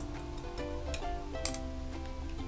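Background music: a light tune of plucked-string notes, with one faint click about one and a half seconds in.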